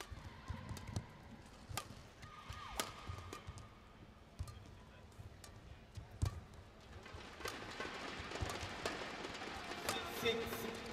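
Badminton rally: sharp racket strikes on a shuttlecock about every second or so, with short shoe squeaks on the court floor early on. Crowd noise in the arena swells in the last few seconds as the rally goes on.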